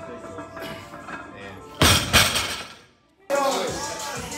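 A heavily loaded barbell with rubber bumper plates coming down on the lifting platform: a sudden loud crash about two seconds in, with a second hit just after as it settles. Music plays in the background.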